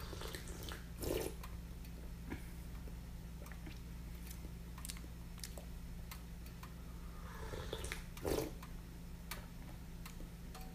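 A person sipping hot tea from a small cup: two short slurping sips, one about a second in and one near the end, over a low steady hum.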